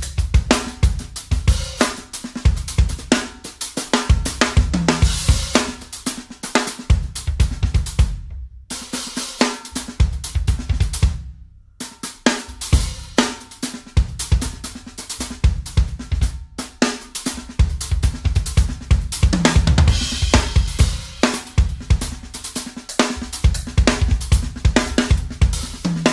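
Drum kit solo played with sticks: a fast, dense run of kick drum, snare, toms, hi-hat and cymbal strokes, broken by two brief, sudden stops a few seconds apart about a third of the way in.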